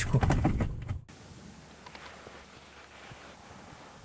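A man's voice over low car-cabin rumble for about the first second, then an abrupt cut to faint, steady outdoor background hiss with no distinct events.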